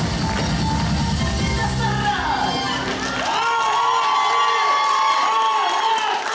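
Russian folk dance music with a heavy beat, which stops about three seconds in. High-pitched children's voices then shout and whoop in long, swooping calls.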